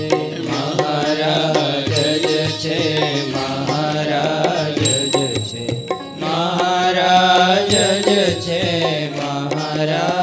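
Devotional music: a voice singing a slow, wavering melody over a steady drone, with a high ringing chime struck about every three seconds.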